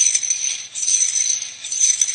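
Coils of a plastic slinky rattling and clattering against one another as a pulse is pushed along it, a continuous rattle that swells and dips a few times.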